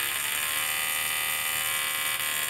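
Steady electrical buzz of a DRSSTC (dual-resonant solid-state Tesla coil) running at very low input power, about 36 volts at 4 amps, with only a tiny spark at the topload.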